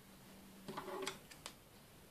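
Small scissors handled and snipping at a knitted legwarmer: a short scrape, then a few sharp clicks of the blades closing, all in the first second and a half.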